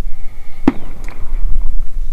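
Low, rough rumbling noise on the microphone, with one sharp knock about two-thirds of a second in as the recovered bullet is handled at the gelatin block.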